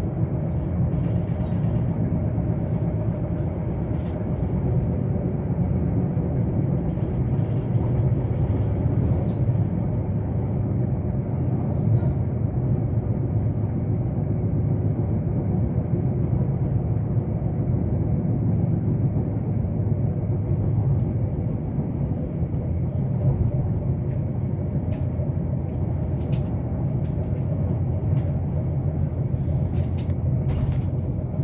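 Steady low rumble of a Nuriro electric multiple-unit train running along the track, heard from inside the passenger car, with a few faint clicks and creaks.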